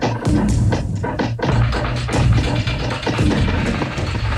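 Gritty cinematic loops from the Boom & Bust Kontakt loop instrument being played: dense percussive hits over a steady low bass.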